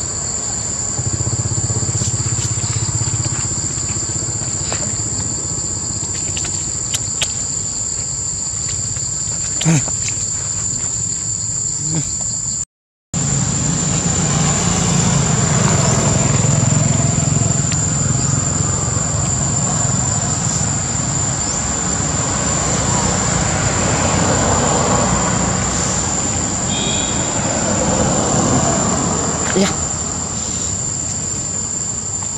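Steady, high-pitched insect drone that runs on without a break, over a low background rumble. It cuts out briefly about 13 seconds in.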